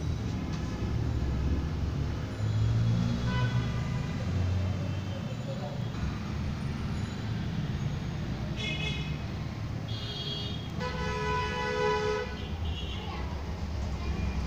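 Street traffic rumbling, with several vehicle horns honking in the second half, the longest just over a second.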